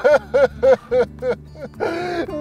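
A man laughing: a run of about five short, even "ha" pulses, about four a second, dying away after a second and a half.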